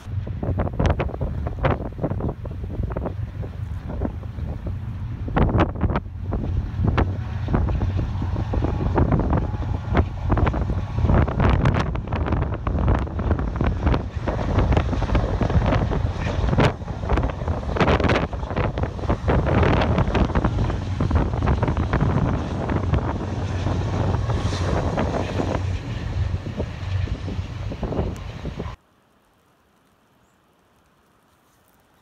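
Freight train with diesel locomotives crossing a steel trestle: a loud, steady low rumble with dense irregular clatter, mixed with wind buffeting the microphone. It cuts off suddenly near the end.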